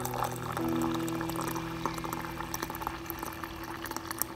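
Water pouring in a steady stream from a water dispenser's spout into a ceramic mug of oats, splashing and crackling as it fills, with background music playing.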